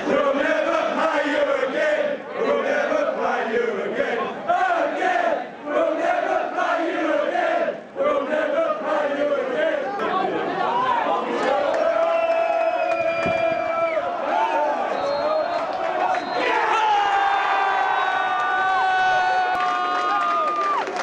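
Large crowd of football supporters singing a chant together, many male voices in unison; in the second half the singing stretches into long held notes.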